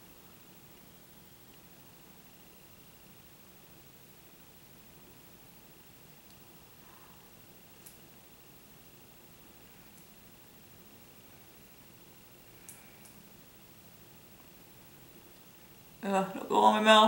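Near silence: faint room tone, with two faint brief ticks, one about halfway through and one near the end.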